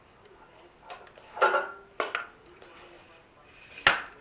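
Handling noise of hard objects: faint rustling and clinking, with sharp clicks about two seconds in and again near the end.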